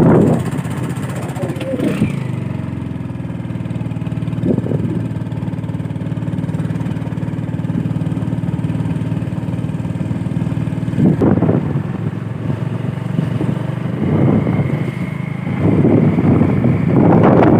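Motorbike engine running steadily while riding along a road, with a few short gusts of wind on the microphone about two-thirds of the way through and near the end.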